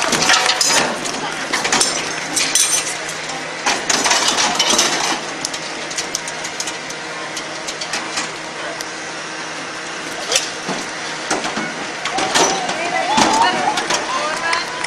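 Metal parts and tools clinking and knocking in quick, irregular strikes as a crew reassembles a 1951 Jeep by hand, over crowd chatter, with shouting voices near the end.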